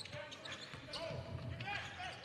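Basketball bouncing on a hardwood court, a sharp bounce at the start, under low arena noise and faint voices.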